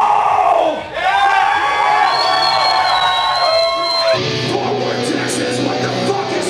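Live heavy metal band through a club PA. Full band and drums stop within the first second, then sustained, wavering guitar notes ring for about three seconds. At about four seconds the sound changes abruptly to a steady low hum with scattered noise.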